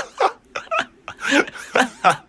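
A man laughing hard in a string of short, pitch-bending laughs.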